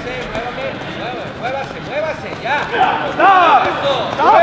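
Several men's voices shouting at a sparring match, short calls over a steady hall din, growing louder and more excited about two and a half seconds in as the fighters close in.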